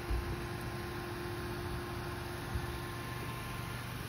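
Peugeot 207 CC standing with its retractable hardtop closing: a steady mechanical hum from the roof mechanism and the running car, with a couple of faint knocks.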